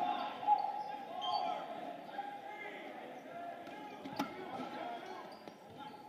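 Dodgeball players calling and shouting in a gym with a hard, echoing sound, while no-sting dodgeballs thud against the hardwood floor and players. A sharp smack comes about four seconds in.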